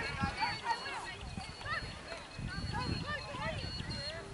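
Distant shouting and calling from players and spectators across the pitch, many voices overlapping, with wind rumbling on the microphone.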